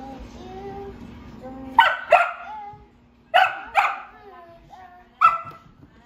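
Dalmatian puppy barking: five sharp, high barks, in two quick pairs and then a single one near the end.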